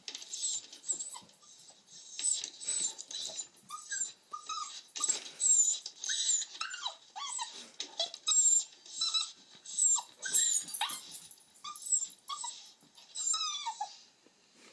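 Recorded puppy whimpering and crying, played back: a string of short, high-pitched squeals that bend up and down in pitch, repeating every second or so.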